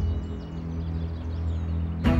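Background music: a sustained low drone, with faint bird chirps high above it.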